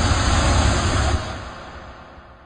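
A rushing noise with a strong deep rumble, dropping in level a little after a second in and then fading away.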